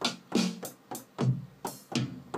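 Electronic drum-kit sounds in Ableton Live, finger-played on a Novation Launchkey's pads: about seven separate drum hits in a loose, uneven rhythm, some with a low thud.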